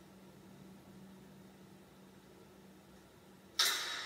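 Faint steady hum, then about three and a half seconds in a sudden sharp snap that dies away quickly: the release of a Japanese longbow (yumi) string, played through a laptop speaker.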